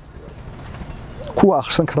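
A man speaking, starting again about a second and a half in after a short pause. During the pause a dove coos faintly in the background.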